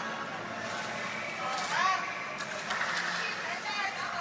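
Shouts of encouragement from a few spectators in a near-empty arena, with several sharp claps between them.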